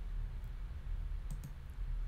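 Computer mouse clicks: a single click about half a second in and a quick pair around a second and a half, over a steady low hum.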